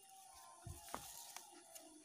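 Near silence, with a few faint, soft sounds of shallow muddy water being stirred as a fishing line draws a swamp eel out of its underwater burrow, about two-thirds of a second and a second in.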